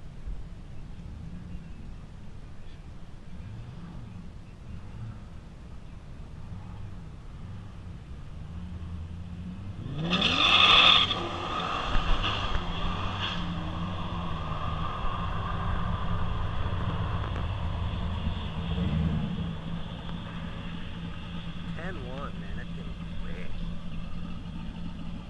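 Drag race cars' engines rumbling at the line, then a loud launch about ten seconds in as the engines rev up hard, easing into a steady engine drone as the cars run down the strip; a few short revs rise near the end.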